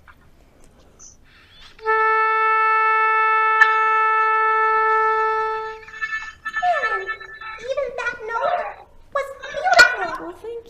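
An oboe sounds one steady tuning A, the note that tunes the orchestra. It starts about two seconds in and is held for about four seconds. A voice then exclaims with sliding pitch.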